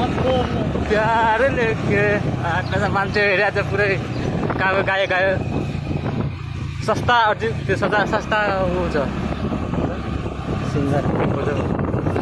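People talking, with a vehicle engine running steadily underneath.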